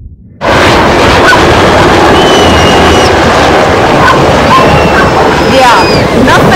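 Military helicopter flying low overhead, its rotor and engine noise loud and steady, with a voice briefly audible near the end.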